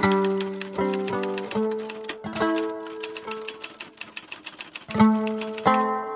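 Typewriter keystroke sound effect, rapid even clicks about six a second, over background music with held notes that change twice.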